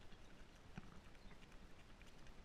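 Faint footsteps crunching on a gravel path, a soft step roughly every half second, against near-silent open-air background.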